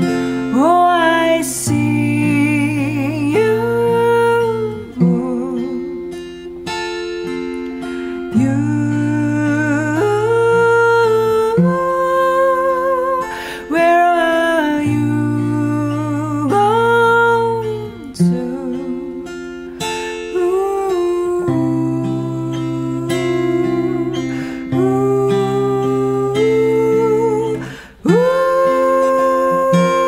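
Acoustic guitar accompaniment under a woman's wordless singing: a melody of long held notes with vibrato, phrase after phrase.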